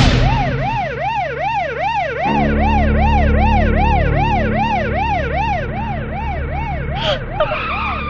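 Emergency vehicle siren wailing, its pitch rising and falling rapidly about three times a second. A low steady drone comes in under it about two seconds in, and other short sounds break in near the end.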